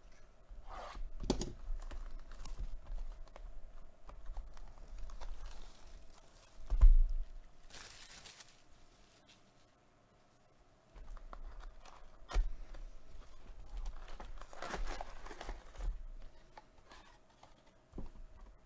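A sealed trading-card box being unwrapped and opened by hand: plastic wrap tearing and crinkling, cardboard and foil packs being handled. There is a sharp thump about seven seconds in, then a short rustle and a brief pause before more rustling.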